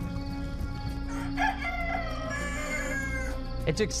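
A rooster crows once: one long call of about two seconds that starts about a second in, over soft background music with a low held note.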